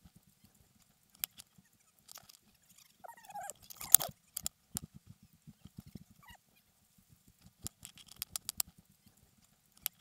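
Irregular footfalls and knocking clatter from a runner moving over rough trail ground, picked up by a helmet-mounted action camera. A sharper knock comes about four seconds in.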